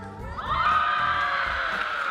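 A woman's voice through the hall's PA holding one long drawn-out call, starting about half a second in.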